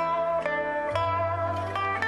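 Pipa playing a Chinese folk melody in plucked notes, several a second, over a sustained low accompaniment that shifts to a new bass note about a second in.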